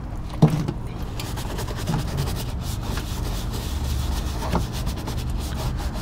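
Stiff-bristled detailing brush scrubbing back and forth in quick strokes over a tire and wheel-well liner, agitating cleaner into burnt rubber residue, with one light knock about half a second in.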